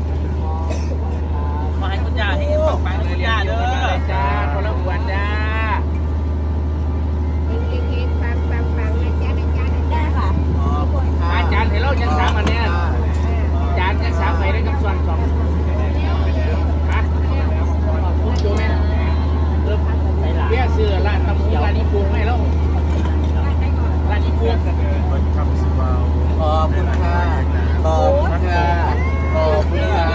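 Large diesel generator set running with a steady low drone and hum, with people's voices chattering over it.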